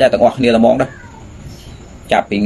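A man speaking Khmer for just under a second, then a pause of about a second with only faint background sound.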